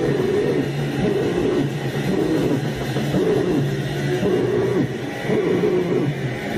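Raw hardcore/noisecore band playing flat out: heavily distorted guitar and drums in one dense, unbroken wall of noise, with a harsh vocal wavering over it.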